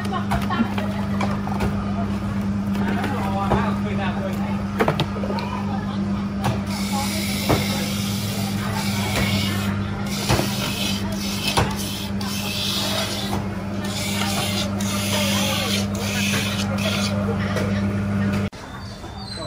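Electric coconut grinding machine running with a steady motor hum, coconut flesh being ground as shredded coconut pours from its spout, with knocks and stretches of rougher grinding noise over the hum.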